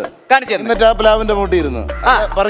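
A man talking in Malayalam over background music. A low bass note comes in under the voice just under a second in.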